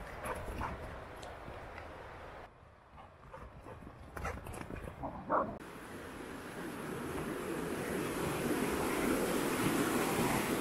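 A dog whimpers and yips a few times, with one short rising whine about five seconds in. A steady rushing noise then swells over the last few seconds and becomes the loudest sound.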